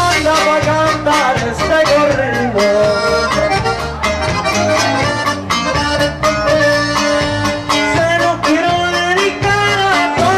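Live norteño conjunto playing an instrumental passage, the accordion carrying the melody over bajo sexto and electric bass.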